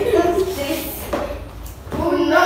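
A girl's voice talking in short phrases, mostly in the first second and a half, then a brief lull.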